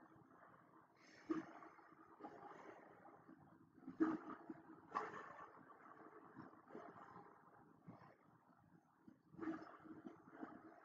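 Faint, muffled playback of a video's soundtrack from computer speakers picked up by the microphone, with a few louder moments about a second in, around four and five seconds, and near the end.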